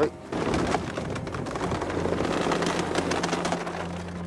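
Steady rushing, crackling noise of a reed boat at sea in the dark, with a low steady drone joining about halfway through.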